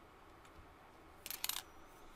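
Two quick, sharp clicks of a computer mouse button, a little past the middle, as a trade order is entered.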